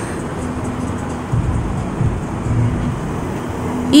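Steady road-traffic noise from cars on a street, with a few low swells near the middle as vehicles pass.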